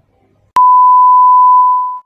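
A single loud electronic beep: one steady, pure tone that starts abruptly about half a second in, holds for about a second and a half, and fades away near the end.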